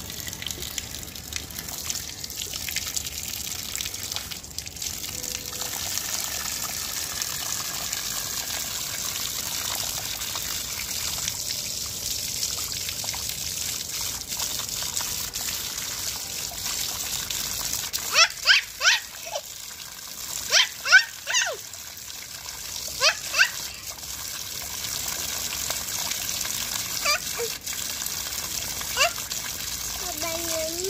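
Water running from an outdoor wall tap and splashing onto the stone ground as a baby's hands play in the stream. About two-thirds of the way through comes a cluster of short high-pitched chirps, with two more near the end.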